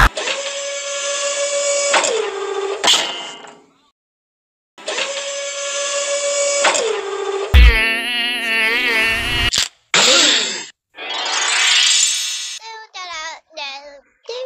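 Cartoon sound effects: two long electric-sounding buzzes, each dropping in pitch as it dies away, with about a second of silence between them. They are followed by a warbling, wobbling tone, two short bursts of hiss, and a few brief squeaky vocal sounds near the end.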